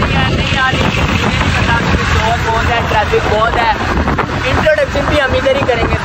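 Motorbike riding at speed: steady engine and road noise with wind rushing over the microphone, under a man's voice.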